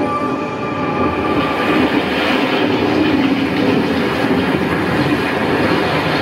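A loud, steady rumbling and clattering noise, train-like, from the music video's soundtrack, taking over just as the song's music stops.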